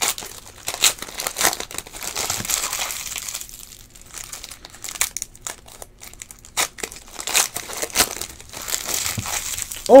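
Foil trading-card pack (Panini Unparalleled football) being torn open and peeled apart by hand: crinkling foil with sharp crackles, quieter for a couple of seconds in the middle.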